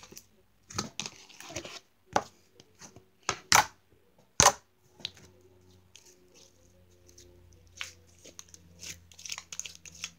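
White slime being pulled out of a plastic tub and stretched in the hands, giving short, sharp sticky pops and tearing sounds, most of them in the first half.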